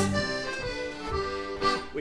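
Piano accordion playing held chords in a quiet instrumental link between verses of a folk song. The louder ensemble fades away at the start.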